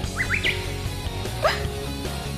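Background music, with two quick rising chirps near the start and a longer upward sweep about a second and a half in.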